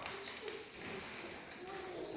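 Faint, distant voices of people talking.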